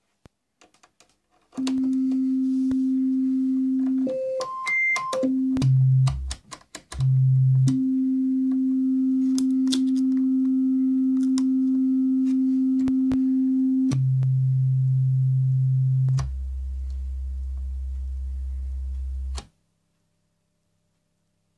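Homemade Befako Even VCO, a eurorack analog oscillator, putting out a steady, nearly pure tone around middle C that jumps in octave steps up to a high whistle and down to a deep bass note, then settles back on middle C as it is tuned to C. It drops to the lower octaves near the end and cuts off suddenly. A few faint clicks come before the tone starts.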